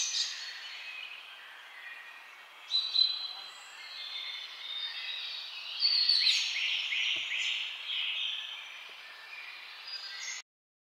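Birds singing and chirping over a steady outdoor background hiss, with louder bursts of song about three seconds in and again from about six to eight seconds.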